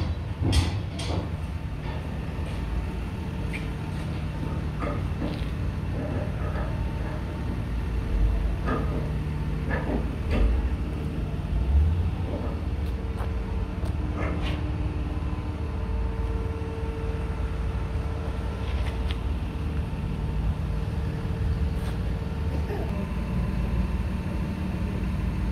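Low steady rumble of vehicle engines running in the background, with scattered faint clicks and knocks.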